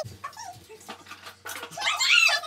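High-pitched whimpering squeals from a child's voice: a few short ones, then a louder rising-and-falling squeal near the end.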